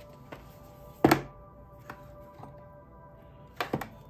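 Soft background music with thuds from tarot cards being handled on a cloth-covered table: one about a second in and two close together near the end.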